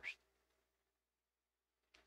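Near silence: faint room tone, with the tail of a spoken word at the very start.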